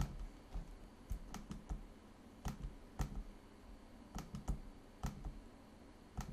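Irregular, faint clicks of a computer mouse, about a dozen over a few seconds, some in quick pairs and triples, over a low background hiss.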